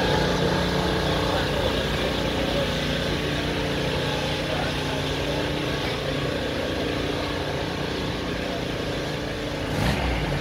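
Classic car engines idling steadily, with crowd chatter in the background and a short knock near the end.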